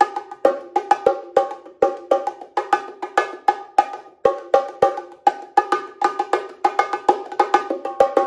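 Pair of bongos played with bare hands in a samba groove: a steady, fast stream of hand strokes moving between the higher and lower drum, with regular louder accents.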